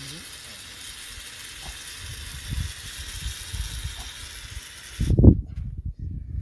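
Aerosol spray can held down in one long, steady hiss that cuts off suddenly about five seconds in, the can spent. A loud low thump or rustle follows near the end.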